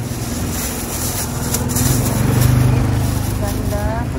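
A steady low mechanical hum, like an idling engine, that swells in the middle, with murmured voices over it and a short rising vocal sound near the end.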